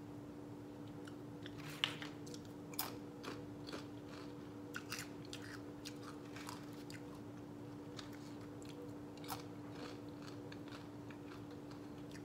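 A person chewing a mouthful of taco, with irregular crunching and crackling bites, the sharpest about two seconds in. A steady low hum runs underneath.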